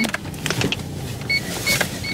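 Car cabin noise while driving slowly: a steady low engine and road rumble, with a few short, faint high-pitched beeps.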